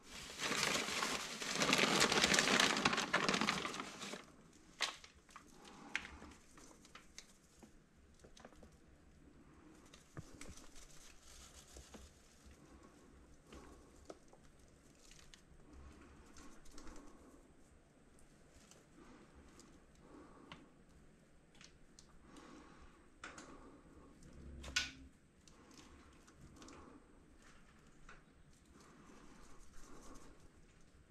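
Paper and plastic packets rustling and crinkling for the first four seconds as a hand sorts through them. After that come quieter, scattered handling sounds: soft taps, scrapes and clicks of small pots and potting soil being worked by hand.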